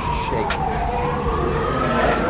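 Emergency vehicle siren wailing, its pitch sliding slowly down and then back up. There is a single sharp click about half a second in.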